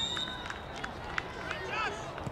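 Outdoor youth soccer match: a steady high whistle tone that stops within the first second, a few sharp knocks of the ball being kicked, and distant shouting from players and sideline near the end.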